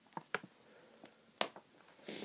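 Handling noise as glued packaging is peeled off a Blu-ray steelbook: a few light clicks and taps, the sharpest about one and a half seconds in.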